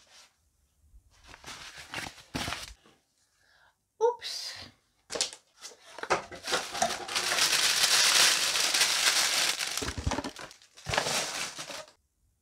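Plastic sheeting and other clutter crinkling and rustling as it is handled and rummaged through by hand, in scattered bursts at first and then a long, dense stretch from about six to ten seconds in.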